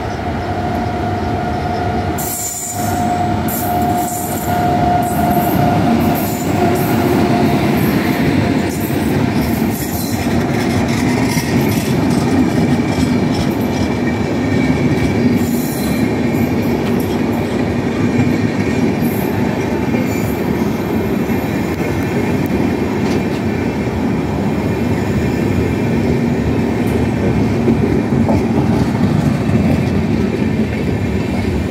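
Electric-hauled passenger train with LHB coaches running past close by: a continuous loud rumble of steel wheels on rail with clickety-clack over the joints and some wheel squeal. A steady whine is heard over the first several seconds as the locomotive approaches.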